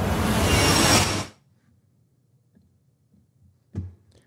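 Cinematic "glass shard" riser sound effect: a hissing, shimmering swell that grows steadily louder, then cuts off abruptly about a second in.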